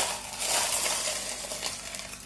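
Ice cubes poured from a plastic cup into a clear plastic shaker, clattering in a dense rush that starts sharply and thins out toward the end.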